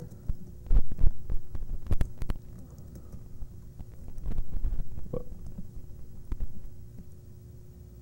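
Irregular keystrokes on a laptop keyboard as terminal commands are typed, heard through the podium microphone as clicks and dull thumps, over a faint steady hum.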